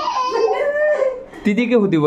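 People's voices: a long, drawn-out laughing cry trailing off from a bout of laughter, then speech begins near the end.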